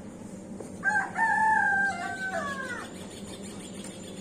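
A rooster crowing once, a call of about two seconds that breaks into a few parts and trails off falling in pitch at the end.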